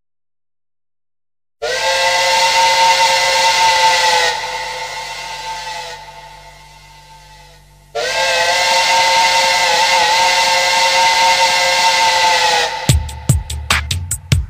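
Opening of a film song after a short silent gap between tracks: a long held chord of several steady tones with a hiss over it sounds twice, the first fading away and the second holding for about five seconds. A fast, even drum-machine beat starts near the end.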